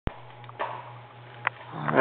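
A steady low electrical hum with a few sharp clicks, then a man's voice starting near the end, rising in pitch.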